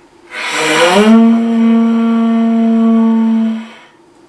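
A conch shell trumpet blown in one long, loud note: a breathy, rising attack settling into a steady held tone that stops shortly before the end.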